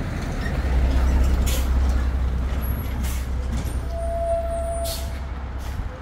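Road traffic: a heavy vehicle passing close by, its low engine rumble swelling about a second in and fading away near the end, with a short high tone about four seconds in.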